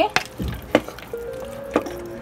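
A wooden spatula stirring ridge gourd and meat curry in a metal pressure cooker, knocking sharply against the pot about three times, over steady background music.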